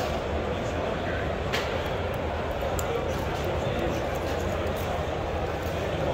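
Steady crowd chatter, the blended murmur of many voices in a busy indoor hall.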